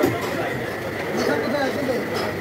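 Indistinct voices talking in the background, over a faint steady high whine.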